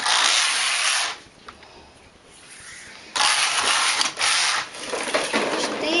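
Domestic knitting machine carriage pushed across the needle bed, knitting rows: a rasping slide of about a second, then after a pause a second, longer pass of about two seconds.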